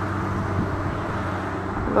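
Steady low hum of road traffic.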